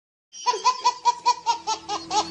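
A baby laughing hard: a fast run of high-pitched laughs, about five a second, each dipping in pitch, starting a third of a second in after silence.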